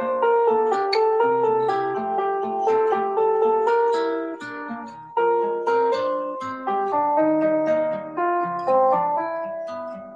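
Computer playback of a jazz-style lead sheet, a melody over chords with a bass line, composed with FlowComposer and played with a plucked, guitar-like instrument sound. The notes are short and fade after each pluck, and the phrase dips in loudness about halfway through.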